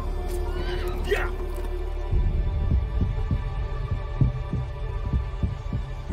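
Trailer score: a low steady drone with a horse whinnying about a second in, then from about two seconds in a deep pulsing beat like a heartbeat, roughly three strokes a second.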